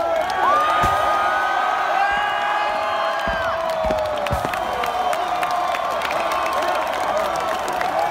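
A large crowd cheering and screaming in one steady roar, with long high shrieks and whoops riding over it. A few short dull thumps come in the first half.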